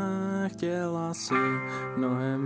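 Punk-rock band recording playing, with guitars.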